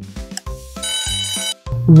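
Alarm-clock ring sound effect marking the end of a countdown timer, over bouncy background music with a steady beat; the ring lasts under a second, about midway. Right at the end a loud voice-like call sweeps up and down in pitch.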